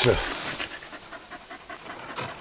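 A dog panting in quick, irregular breaths.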